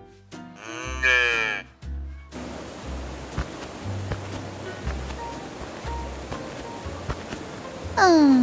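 Background music with a low bass line. About a second in comes a short pitched vocal call, and from about two seconds in the steady rush of a waterfall.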